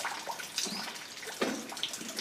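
Irregular dripping and splashing of water, with a few faint, short, high chirps.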